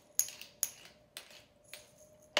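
Four light metallic clinks of kitchen utensils, about half a second apart, each with a short high ring; the first is the loudest.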